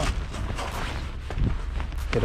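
Irregular crackles and a few dull thumps of footsteps on crusted snow and concrete.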